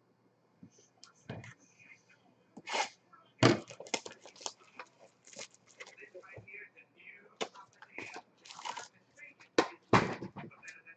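Cardboard trading-card box and its packs being handled and opened on a table: irregular rustling, scraping and clicking, with sharp knocks about a third of the way in and again near the end.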